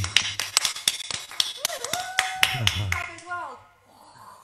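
Two people clapping fast and irregularly and cheering with rising and falling whoops, heard through a video call's compressed audio; the applause dies away shortly before the end.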